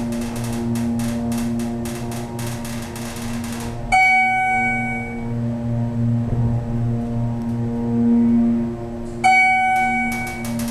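Schindler 330A hydraulic elevator car travelling upward: steady hum of the hydraulic pump motor, with a bell-like floor chime about four seconds in and again near the end as the car reaches each floor.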